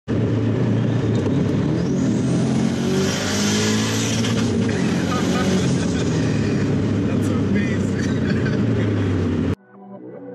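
Turbocharged Subaru WRX STi flat-four engine pulling hard, heard from inside the cabin, with a high turbo whistle that rises about two seconds in and then holds. The sound cuts off suddenly just before the end.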